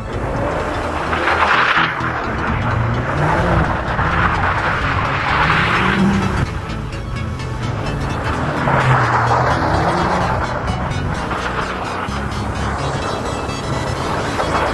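Mercedes-Benz CLS engine revving up and down in repeated swells every few seconds as the car drifts on snow, with its wheels spinning. Music plays underneath.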